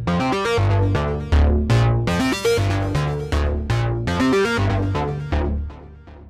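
Sequence-driven Thor synthesizer patch playing through a Reason effects chain of Scream 4 distortion, compressor, CF-101 chorus/flanger and RV7000 reverb. It runs quick plucked notes over a repeating bass line, then stops near the end and dies away in a reverb tail.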